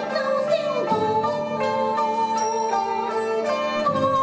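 Guzheng (Chinese zither) being plucked, a run of ringing notes, with one note bent up and back down in the first second.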